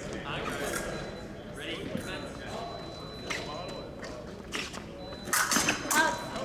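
Fencers' footwork, steps and stamps on the piste, during an épée bout, over a murmur of voices in a large hall. A louder cluster of sharp impacts comes near the end as one fencer lunges.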